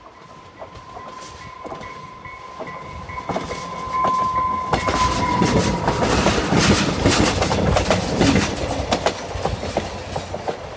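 Diesel passenger train approaching and passing close by, its wheels clicking rapidly over the rail joints, loudest a little past the middle as the cars go by. A steady high tone runs through the first half and dips in pitch as the train passes.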